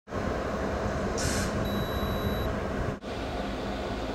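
Steady rumbling background noise, heaviest in the low end, that starts abruptly and breaks off for an instant about three seconds in.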